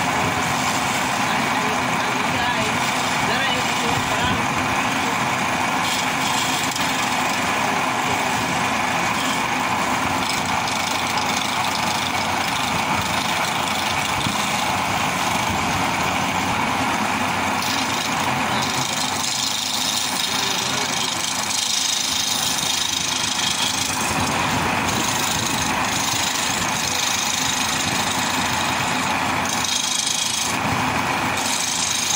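A motor-driven lathe running steadily while a hand chisel scrapes into the spinning wooden spindle. The cutting turns brighter and hissier for several seconds after the middle.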